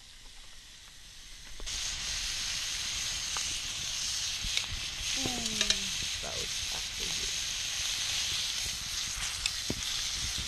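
Goat meat frying in a pan over a campfire, sizzling steadily. The sizzle starts suddenly about two seconds in, with a few small pops and crackles.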